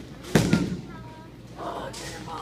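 Hard clacks of bowling equipment: two sharp knocks in quick succession, a fraction of a second apart, with a short ringing tail.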